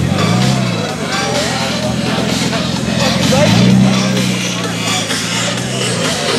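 Car engine running with two revs: a short blip about half a second in, then a longer rise and hold about three and a half seconds in, the loudest part. Crowd voices and music are heard over it.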